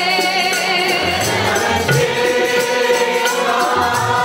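Sikh kirtan: a congregation singing together, led on harmonium with its held reedy notes, with tabla keeping a steady beat.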